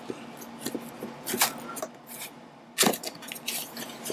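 Cardboard camera box being handled and opened by hand: scattered short scrapes and rustles, the loudest about a second and a half in and again near three seconds.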